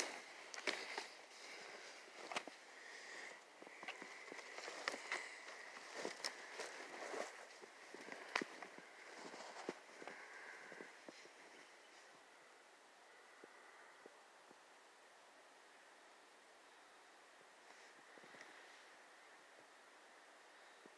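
Footsteps crunching in snow with twigs and brush rustling, irregular for about the first ten seconds, then fading to near silence as the walking stops.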